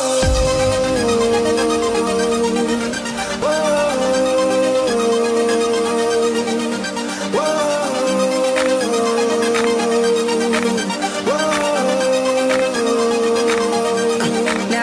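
Instrumental intro of an electronic pop song: a synth lead repeats a phrase that slides up into each held note about every four seconds, over a steady beat.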